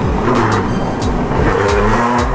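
Drift trike wheels rolling and sliding on a smooth store floor, a steady scraping hiss, over background music with a beat.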